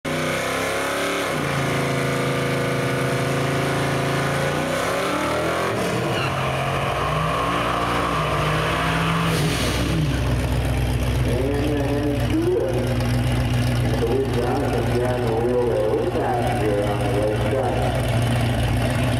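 Drag cars' V8 engines revving and held at steady revs, then a burnout: the engine climbs with tyres spinning on the pavement and cuts back sharply about nine seconds in. After that the engines idle with a low steady rumble while the cars stage.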